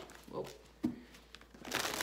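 A large Gaian Tarot deck being shuffled by hand: a single soft knock of cards about a second in, then a quick flutter of card edges near the end.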